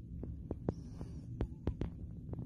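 Handling noise of a phone held close while filming: a steady low rumble with about half a dozen small clicks and taps scattered through it.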